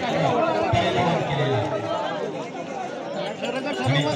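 Large crowd of men chattering and calling out at once, many overlapping voices with no single speaker standing out.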